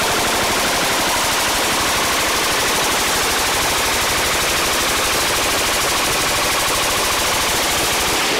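Automatic weapon fire, likely a machine gun, in one long unbroken burst of rapid shots. It is close and loud throughout.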